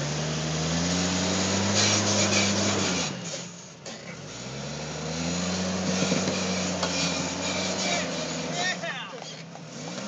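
Jeep Cherokee engine revving under load as it crawls over a rock ledge, in two long pulls. The pitch rises over the first two seconds and falls away about three seconds in. After a short lull it builds again and holds, then drops off near the end.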